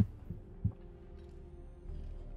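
Quiet, low ambient score or sound design from the animated episode: a steady low drone with faint held tones and one soft low thump about two-thirds of a second in.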